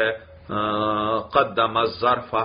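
A man's voice drawing out one long syllable at a steady pitch in a chant-like way. Broken speech follows near the end.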